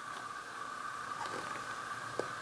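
Quiet room noise with a steady high hum and faint hiss, and a few light clicks from the cardboard knife box being handled.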